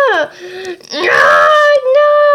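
A person wailing in a high voice. One long cry slides down in pitch and breaks off just after the start, a short low moan follows, and a second long, loud cry begins about a second in.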